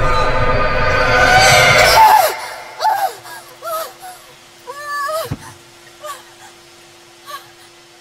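A woman in labour crying out and moaning in short strained bursts as she pushes, over a faint steady hum. Before that, loud dramatic film music swells and cuts off abruptly about two seconds in.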